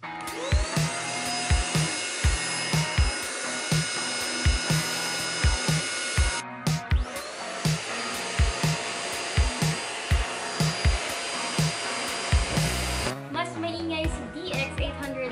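A Deerma DX700 corded handheld vacuum cleaner is switched on. Its motor whines up to speed and runs steadily for about six seconds, then stops. A Deerma DX810 vacuum is then switched on, rises to speed the same way and runs steadily until shortly before the end. Background music with a steady beat plays under both.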